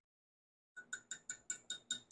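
Small metal measuring spoon tapped rapidly against the rim of a glass measuring cup to knock off powder. The light, ringing taps come about six a second, starting under a second in.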